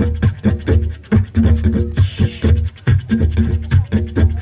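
Didgeridoo played in a fast rhythmic pattern: a deep drone with pulsing overtones at about three beats a second. There is a brief hiss about two seconds in.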